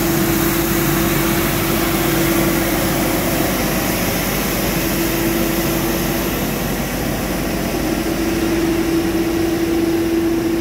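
Street sweeper truck working a gutter, its engine and sweeping gear running: a steady hum under a dense, even hiss.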